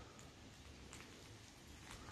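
Near silence: the faint, steady rush of a distant river, with a few faint ticks.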